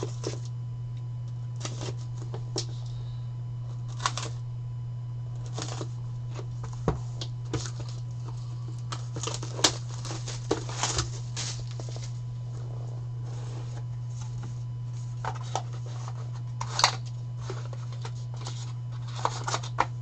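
A 2023 Leaf Ultimate Hockey box being unwrapped and opened by hand: scattered crinkles, clicks and scrapes from the shrink-wrap, the cardboard box and a clear plastic card case. A steady low hum runs underneath.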